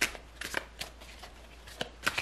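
Tarot deck handled and shuffled by hand: a few short, sharp card snaps at irregular intervals.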